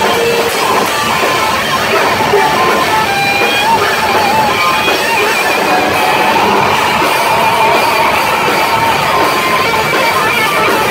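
Heavy metal band playing live at full volume: distorted electric guitars and drums, with vocals into the microphone.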